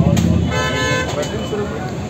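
A vehicle horn sounds once, for about half a second starting about half a second in, over a steady low rumble of street noise.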